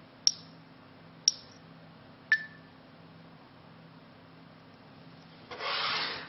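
Three sharp clicks, evenly about a second apart, from the Nokia Lumia 820's camera app as it captures a cinemagraph. Near the end comes a brief rustle of the phone being handled.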